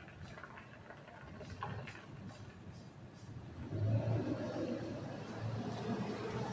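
A car engine running nearby, faint at first and growing louder a little past the middle.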